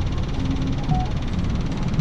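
Car engine running at low speed, heard from inside the cabin as a steady low rumble.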